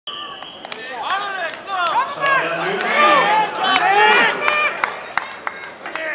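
Several people's voices calling and talking over one another, with scattered sharp clicks.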